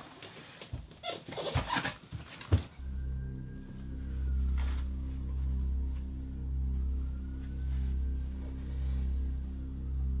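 Rustling, scuffing and a few knocks of a person climbing in through a small window and dropping to the floor, the sharpest knock about two and a half seconds in. After that, a low droning music bed that swells and fades in a slow pulse.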